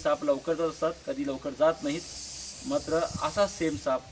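Russell's viper hissing while held up by the tail, a long hiss lasting about a second and a half in the middle, under a man talking.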